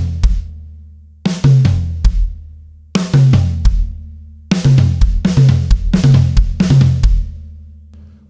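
Drum kit playing a quick snare, high tom, floor tom and bass drum figure, the first two strokes twice as fast as the last two, with the toms ringing on after each group. It is played as single groups about every one and a half seconds, then about halfway through as four groups in a row.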